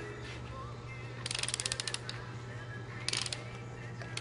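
Hand ratchet clicking as it is swung back while snugging down rocker shaft bolts: a quick run of clicks about a second in, and a shorter run near the end, over a steady low hum.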